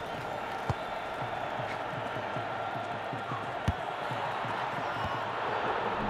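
Stadium crowd noise, steady and swelling toward the end, with sharp thumps of a football being kicked about a second in and again near four seconds in, the second one the loudest.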